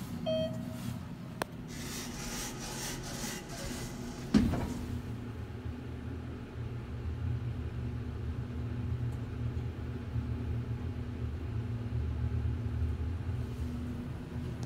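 Inside a 2019 ThyssenKrupp traction elevator car: a short beep as a car-panel floor button is pressed, then the doors sliding shut for a couple of seconds, ending in a thump about four seconds in. After that comes the steady low rumble and hum of the car travelling in the hoistway.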